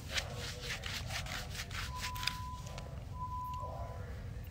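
Rubbing and rustling strokes, then two steady electronic beeps at one pitch, each under a second long, about a second apart.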